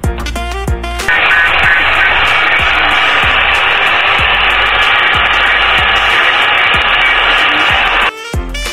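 Handheld electric angle grinder starting up about a second in and then running steadily as it grinds a small part, with background music underneath.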